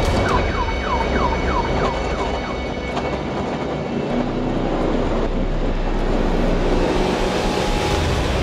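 Steady engine and road noise inside a rally car's cabin on the move, with a run of about eight quick falling chirps in the first two and a half seconds.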